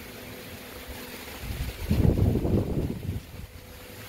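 Wind gusting across the phone's microphone: a low, irregular rumble that swells about a second and a half in and dies away after about a second and a half.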